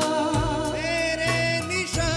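Hindi song performed live: a wavering, held melody line over band accompaniment, with a few drum strikes.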